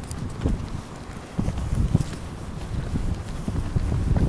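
Footsteps walking on a concrete sidewalk, low thuds about twice a second.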